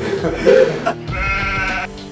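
A man's voice: a short vocal sound, then a drawn-out, wavering, bleat-like vocal sound held for nearly a second that stops abruptly.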